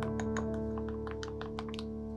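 Background music with sustained notes, over a run of light clicks from a wooden spoon knocking against a small glass bowl as a thick sauce is stirred.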